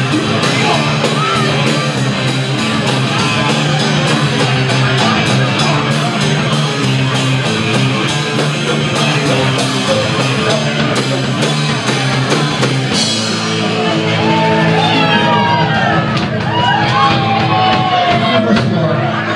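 Live rock band playing: drums with steady cymbal strokes, electric guitars, bass and vocals. The drumming stops about thirteen seconds in, leaving a held chord ringing under shouts and whistles from the audience.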